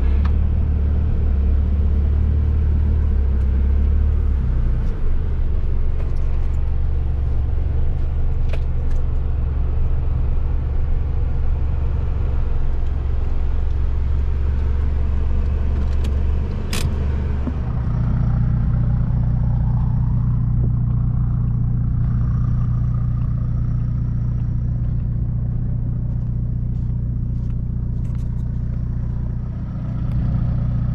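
A four-wheel-drive ute's engine and tyres heard from inside the cabin, driving steadily along a soft sand track. About 17 seconds in, the sound changes abruptly to a steadier, deeper engine hum.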